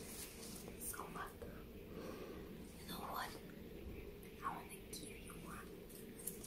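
A woman whispering softly close to the microphone in short breathy bits, with a few light rustles and ticks as rose stems and leaves are handled.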